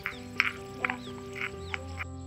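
Instrumental background music with sustained notes, with four or five short, sharp high-pitched sounds over it about half a second apart.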